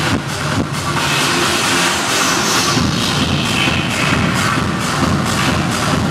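Techno played loud through a club sound system, the kick drum at about two beats a second. About a second in the kick drops back under a rushing noise sweep, and the full beat returns about three seconds in.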